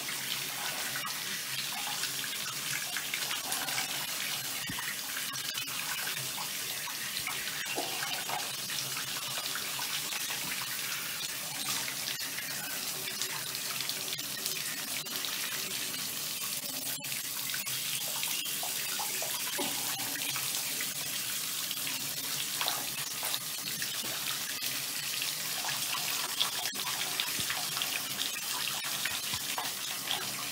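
Handheld shower head spraying steadily, the water splashing onto a dog's wet coat and into a bathtub.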